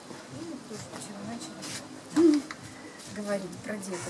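Women's voices in casual conversation, with a short, louder rising-and-falling vocal exclamation about two seconds in.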